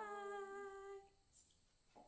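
A person's voice holding one steady note for about a second, sliding up into it at the start and then fading out, followed by a short hiss.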